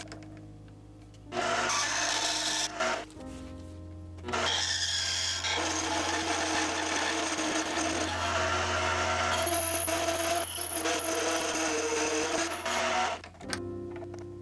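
Mini metal lathe turning an aluminium part with a lathe tool: a short cutting pass about a second in, then a long steady cutting stretch from about four seconds in that stops abruptly about a second before the end.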